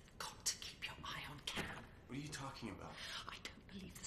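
Quiet whispered speech: hushed voices talking in low, breathy whispers.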